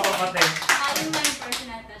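A few scattered hand claps, sharp and irregular, mixed with talking in a small room.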